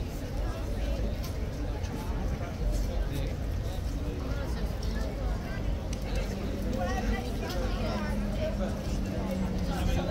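Background chatter of passers-by's voices over a low traffic rumble; a steady low hum, like an engine running, joins about six seconds in.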